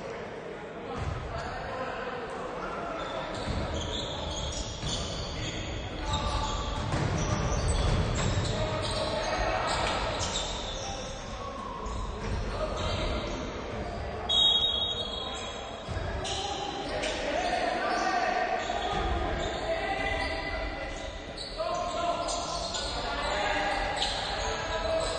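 Basketball being dribbled and bounced on a hardwood court, with players' voices calling out, echoing in a large gym. A brief shrill, high-pitched sound stands out about fourteen seconds in.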